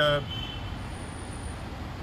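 A steady low background rumble, with no distinct events, in a short gap between the narrator's words.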